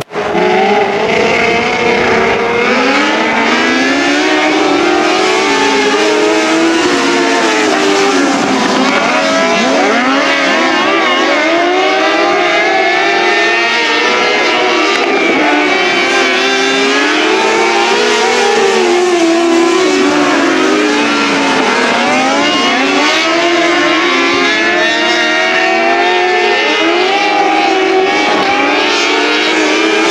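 Several 600cc micro sprint cars racing together, their motorcycle-type engines revving high and rising and falling in pitch as they run through the turns and down the straights, the engines overlapping throughout.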